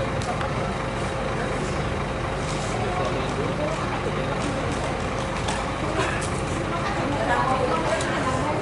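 Coach bus diesel engine idling steadily, with indistinct voices talking in the background.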